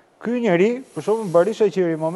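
Only speech: a man talking in Albanian, with a faint high hiss underneath.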